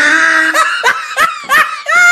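Loud laughter: a held vocal note at first, then about five short laughs in quick succession.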